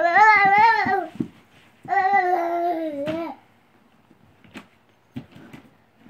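A toddler babbling: two long, high-pitched vowel calls of about a second each, followed near the end by a few faint knocks.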